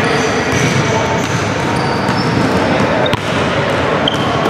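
Basketball bouncing on a hardwood gym floor, with a steady wash of room noise echoing in the large hall.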